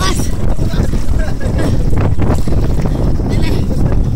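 Steady low wind rumble on the microphone, with faint voices calling out now and then.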